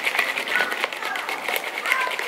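Fuel Baby bottle of water and powdered formula being shaken hard, a quick run of even rattling as the blender ball inside knocks around while the formula mixes into the water.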